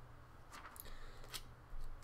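Quiet room tone: a low steady hum with a few faint, scattered clicks.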